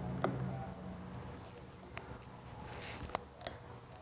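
A few faint, sharp metallic clicks, about four spread through, as a wrench works the lock nut on a Vespa GTS mirror stem. A low steady hum fades out in the first second.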